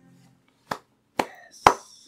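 Three short, sharp clicks made by hand, about half a second apart, the last the loudest.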